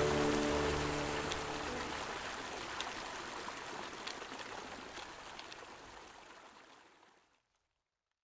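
The last acoustic guitar chord of the closing music rings out and dies away in the first two seconds, over the steady rush of creek water. The water sound then fades out to silence over the next few seconds.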